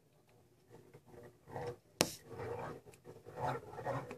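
Javelinas (collared peccaries) giving harsh growls in several rough bursts as they squabble, with one sharp click about two seconds in, the loudest sound.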